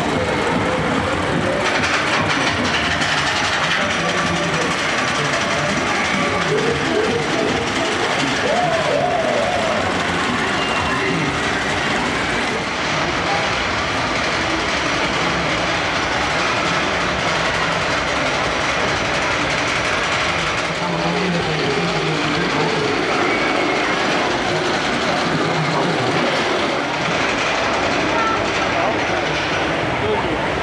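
Steel roller coaster train running along its track, a steady rattling rumble of wheels on rails, with fairground crowd voices mixed in.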